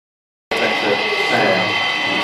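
Silence for about half a second, then people talking over a steady high-pitched hum that starts abruptly.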